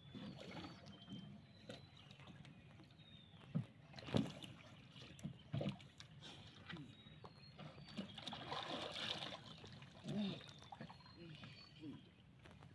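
Faint water sloshing and small splashes against a small outrigger canoe as swimmers push it through calm sea water, with a few light knocks on the hull.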